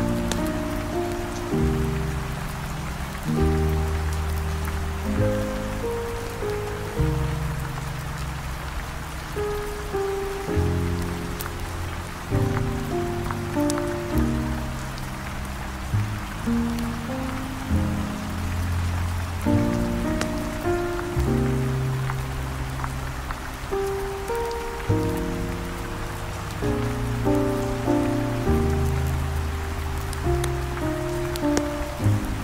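Steady rain mixed with slow smooth jazz: held bass notes and soft chords shifting every second or two, under a constant hiss of rain with faint scattered ticks.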